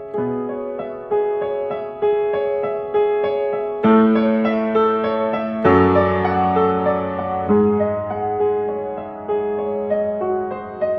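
Yamaha TransAcoustic upright piano played acoustically, its hammers striking the strings: slow, sustained chords struck about once a second, with two louder chords about four and six seconds in.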